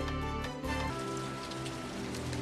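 Steady rain falling, under soft music of held notes that change chord about a second in.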